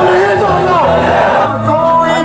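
A voice over crowd noise, then about one and a half seconds in, music with a man singing comes in.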